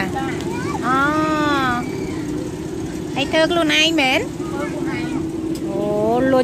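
Women talking in short phrases at a snack stall, over a steady low motor-like hum in the background.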